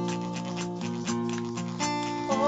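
Live acoustic band music: an acoustic guitar strumming chords, with a small plastic maraca shaken in rhythm.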